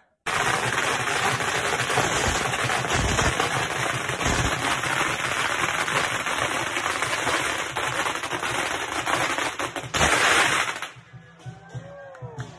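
A long string of firecrackers going off in a rapid, continuous crackle of bangs. It is loudest just before it cuts off suddenly, about a second before the end.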